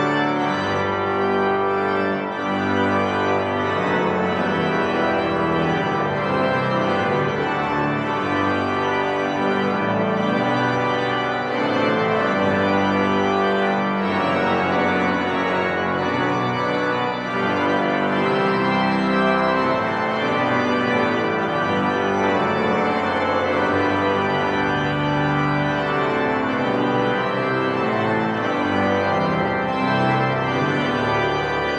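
Pipe organ played on manuals and pedals: held chords that change every second or two over a sustained pedal bass, at a steady level.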